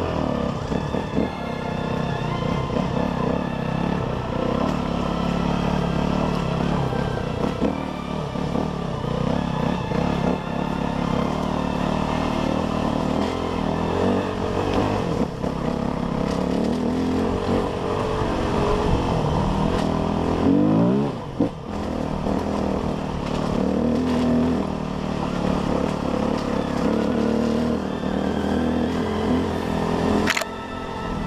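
Dirt bike engine running under way on a trail, its revs rising and falling with the throttle. About two-thirds of the way through there is a quick rise in revs followed by a brief drop.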